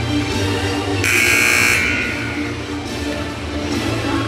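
A basketball scoreboard buzzer sounds once, about a second in, for under a second, over music playing in the gym.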